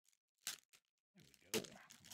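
A brief crackle of a pin's cardboard backing card about half a second in, as the pin is worked free of it with a pocket knife.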